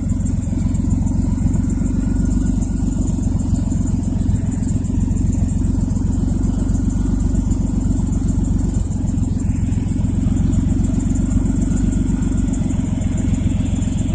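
Minivan engine idling with a steady, rapid exhaust putter, through a muffler that has a hole in it.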